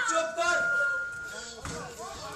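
A performer's voice through the stage sound system, rising into one long held vocal sound, followed by a sudden thump a little before the end.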